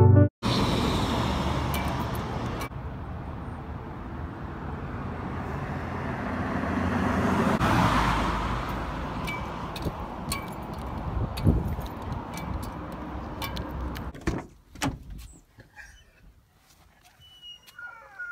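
Road traffic: cars driving past on a multi-lane road, the noise swelling as a car goes by about halfway through. Near the end it cuts off to much quieter sound with a few clicks and knocks.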